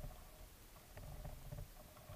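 Faint underwater noise picked up by the camera: low rumbling that swells and fades in pulses, with a few scattered clicks.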